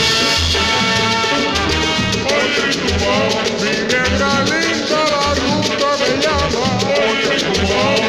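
Guaracha salsa recording played loud over a sonidero sound system: a recurring bass beat with maracas, and sung vocal lines coming in a little over two seconds in.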